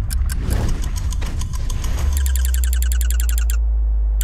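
Timekeeping sound design in a promo soundtrack: scattered ticks, then a deep steady low drone enters about halfway through, with a rapid even run of electronic beeping ticks, about a dozen a second, that cuts off shortly before the end.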